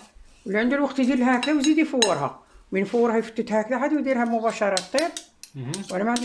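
A metal spoon scraping and clinking against a ceramic plate as small dry pasta is stirred with oil, with a person talking loudly over it for most of the time.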